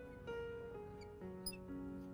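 Soft background music of sustained, gently changing notes. About a second and a half in comes one brief high squeak, which fits a marker on the glass board.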